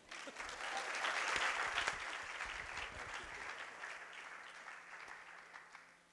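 Audience applauding: the clapping comes in at once, is loudest after a second or two, and then gradually dies away.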